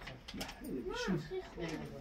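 Voices in a small room, among them a young child's high-pitched babble that rises and falls about a second in.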